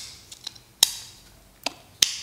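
A few sharp clicks of small metal folding-knife parts being set into the handle liner, the loudest a little under a second in.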